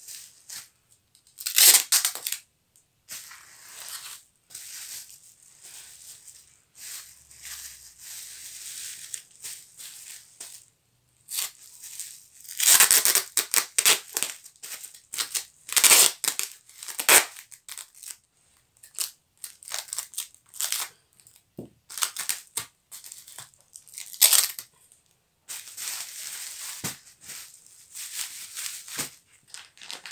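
Clear packing tape torn off its roll in a series of sharp pulls, the loudest a couple of seconds in and several through the middle, with bubble wrap crinkling and rustling as the parcel is pressed and taped.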